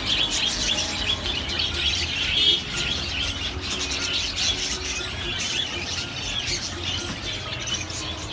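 A crowd of caged budgerigars and finches chirping and chattering all at once, a dense, unbroken twitter with a louder burst about two and a half seconds in.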